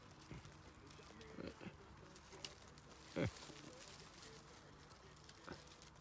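Very quiet outdoor background, broken about halfway through by a man's short exclamation, "ech".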